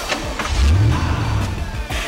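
A car engine revving, starting about half a second in and lasting about a second, over background music.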